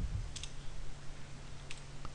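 Two faint computer keyboard keystrokes, about a second apart, over a low steady hum.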